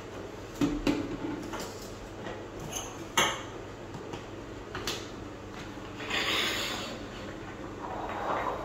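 Plastic bottles and a ceramic holder being picked up and set down on a marble vanity top: a few separate sharp knocks and clinks, then a longer rubbing hiss about six seconds in.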